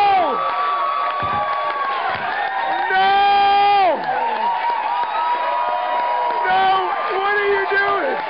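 Audience screaming and cheering, with long high-pitched shrieks that slide down in pitch at the end, one right at the start and a louder one about three seconds in.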